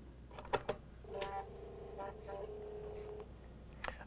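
Apple IIGS 3.5-inch floppy disk drive taking in a disk with a few quick clicks, then spinning up and reading it. It gives a steady pitched hum that shifts a little in pitch partway through and stops after about two seconds, followed by one more click near the end.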